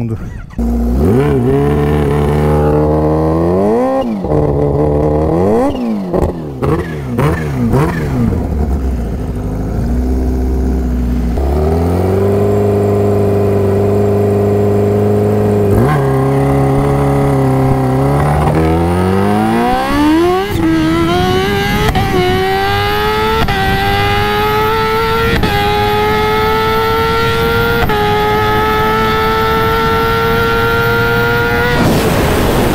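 A Kawasaki Ninja H2's supercharged inline-four is blipped several times, then held at steady high revs for a few seconds on the line. It then launches and pulls hard up through the gears, the pitch climbing with a short dip at each of about five quick upshifts.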